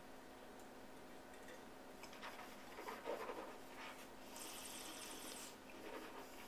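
Faint sounds of a man tasting a sip of red wine: small mouth noises around the middle, then a soft airy hiss of breath lasting about a second near the end.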